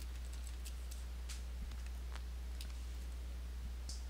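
A few faint, irregular computer keyboard clicks over a steady low electrical hum.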